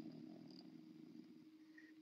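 Near silence in a pause between spoken phrases, with only a faint steady low hum underneath.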